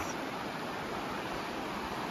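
Shallow, rocky river flowing over riffles: a steady rush of water.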